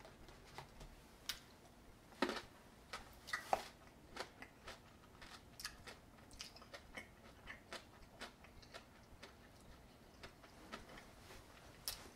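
A person quietly chewing a mouthful of kumquat: faint, irregular clicks and smacks from the mouth, a few a second.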